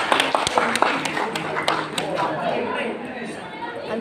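Table tennis ball clicking off the paddles and table in a quick rally, about three hits a second, which stops a little under two seconds in. Voices chatter steadily underneath.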